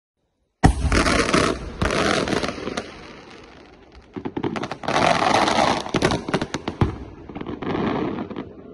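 Aerial firework shells bursting: a sudden bang about half a second in, then rolling reports and dense crackling. A second volley of sharp cracks and crackling builds from about four seconds in.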